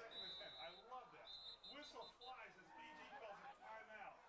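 Faint crowd voices and chatter from the stands, with a referee's whistle sounding twice: a short blast at the start and a longer one about a second later, blowing the play dead.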